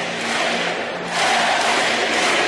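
A crowd of schoolgirls clapping and cheering, getting louder about a second in.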